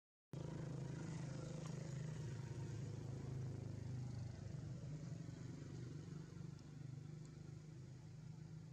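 A motor engine running steadily with a low hum. It starts abruptly a moment in and slowly grows fainter.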